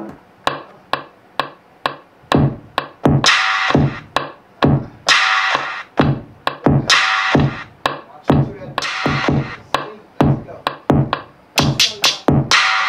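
Drum-machine beat from an Akai MPC Live played over studio monitors. Only the drums sound, as low hits about two a second with a longer, bright hit roughly every two seconds.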